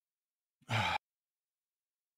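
A person's short, breathy sigh, a little under half a second long, about half a second in.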